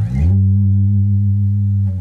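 Electric bass guitar playing a single low note: it slides up into pitch at the start, is held steadily, and slides back down near the end.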